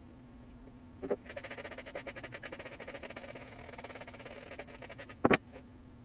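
Fingers rubbing a care cream into a football boot, the boot squeaking in a fast run of short creaks for about three seconds. A short knock comes before the squeaking and a single loud, sharp knock near the end.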